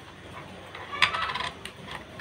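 A small metal object clinks once on a hard surface about a second in, ringing briefly, followed by two light clicks.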